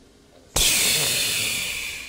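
A sudden loud hiss starts about half a second in, holds, then fades slowly and dies away near the end.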